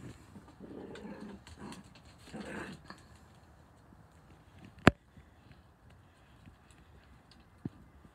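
Puppies vocalising as they wrestle in play, in two short bouts during the first three seconds, then a single sharp click about five seconds in.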